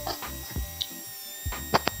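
Quiet pause: a faint steady electrical hum with a thin high whine, broken by a few soft clicks, the last of them just before speech resumes. No router cutting noise is heard.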